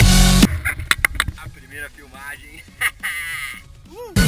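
Electronic background music cuts off about half a second in, leaving a few sharp knocks and a man's voice making short exclamations. The music comes back in at the very end.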